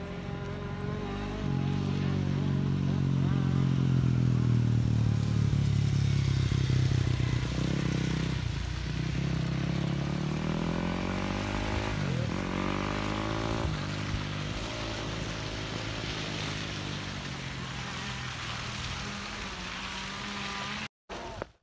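Dirt bike engines running and revving, loudest in the first third, with the pitch climbing in sweeps as the bikes accelerate and a sharp drop and rise about halfway through.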